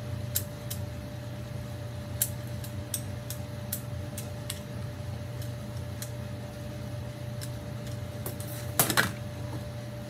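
Scattered light clicks and taps of a hard plastic soap mold and a vegetable peeler being handled on a steel table, with a louder clatter about nine seconds in. Under them runs a steady background hum and a steady tone that stops at about the same moment.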